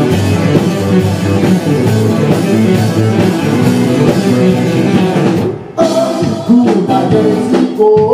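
Live rock band playing, with electric guitar and drum kit. The band stops briefly about five and a half seconds in, then comes straight back in.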